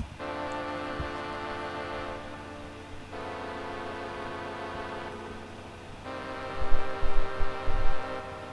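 String-ensemble synth (Arturia Solina V2, Oxygen 5 preset) playing a slow progression of sustained minor chords on its own, with the chord changing every couple of seconds. A few low thumps sound near the end.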